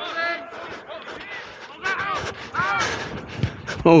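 Shouting voices of rugby players calling out across an open field, fainter than the close voice around it, over a steady outdoor background hiss.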